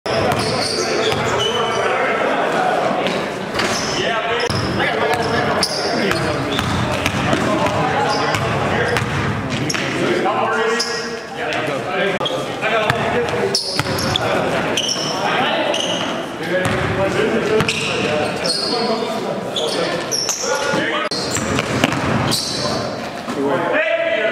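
Live court sound of an indoor basketball game: the ball bouncing on the gym floor again and again, with players' voices calling out, echoing in a large gym hall.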